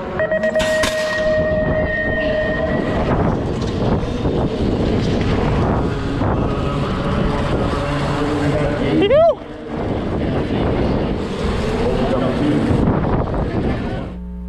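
Rush of wind over a helmet camera and BMX tyres rolling on a dirt track during a race run, a loud, steady noise. A held tone sounds in the first few seconds, and a brief rising-then-falling tone comes about nine seconds in.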